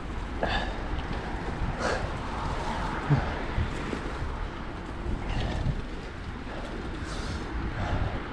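Mountain bike rolling along a leaf-covered dirt singletrack: steady tyre and wind noise with a low rumble, and occasional knocks and rattles from the bike over bumps.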